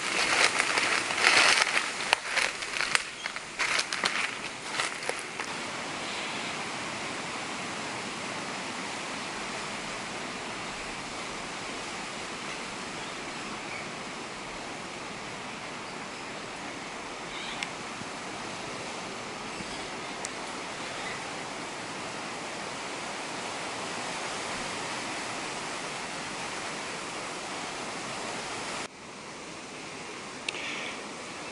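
Footsteps crunching irregularly over dry leaf litter and rough coral rock for the first few seconds, then a steady rushing outdoor background noise.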